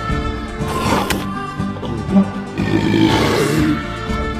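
Background film music, with a short wet eating sound effect about a second in as an animated young lion gulps a snail, then a contented chuckling laugh near the end.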